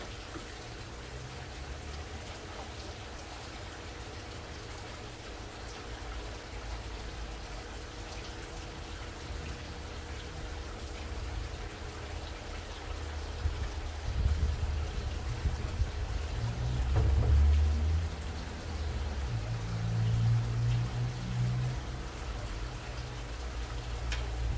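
Steady patter of running water with a faint hum under it. Gusts of low rumble set in about halfway through and are loudest in the second half.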